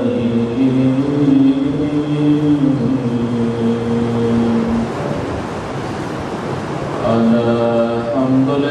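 A man chanting an Arabic religious recitation on long, drawn-out, wavering notes. He breaks off about five seconds in and resumes near the end.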